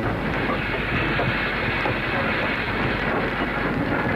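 Train sound effect: a train running along the rails, a steady noise of wheels and carriages.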